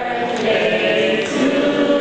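A group of voices singing together, holding long notes.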